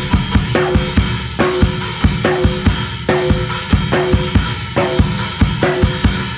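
Instrumental passage of a post-punk/hardcore band recording: a drum kit plays a steady beat of kick and snare strikes, with a short pitched note recurring between the strikes.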